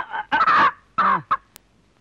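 A hen clucking and squawking in about three short bursts as it is caught and picked up by hand.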